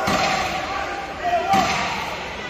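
Two dull thuds from the boxers in the ring, one at the start and one about a second and a half later, over voices in a large hall.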